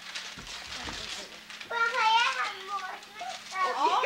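A child's excited voice, a drawn-out exclamation about two seconds in and another starting near the end, after a second or so of rustling and low bumps of handling noise. A steady low hum runs underneath.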